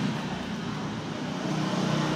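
Steady background road-traffic noise, an even rumble and hiss with no distinct event.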